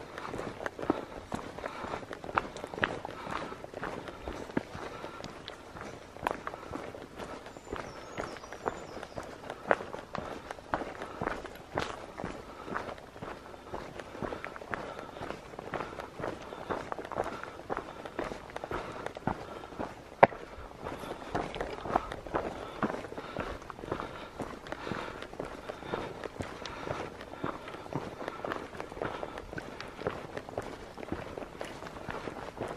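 Hiker's footsteps crunching on a dry, leaf-strewn dirt trail at a steady walking pace, with one sharper knock about two-thirds of the way through.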